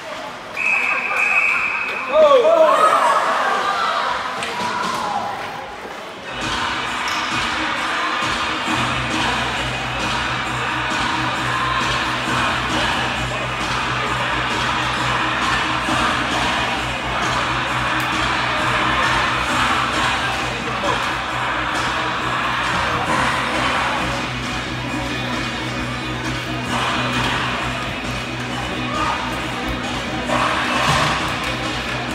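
A short blast on a referee's whistle about a second in, followed by shouting from the crowd. From about six seconds in, music plays over the rink's public-address system during the stoppage.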